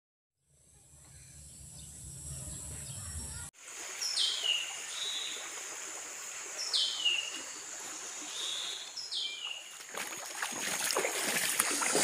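After a brief intro sound effect with a low rumble that cuts off sharply, a forest bird calls three times, about every two and a half seconds. Each call is a falling whistled note followed by a short higher note. Behind it are a steady high insect whine and a continuous rush of running water.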